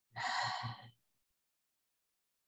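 A woman's audible sighing exhale, a little under a second long, near the start.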